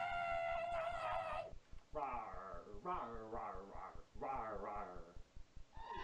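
A person in a dog fursuit howling: one long, steady howl that ends about a second and a half in, then three or four shorter, wavering howls.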